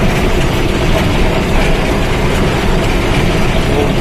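Truck cab noise while driving downhill: a steady low engine and drivetrain rumble mixed with road and tyre noise, heard from inside the cab.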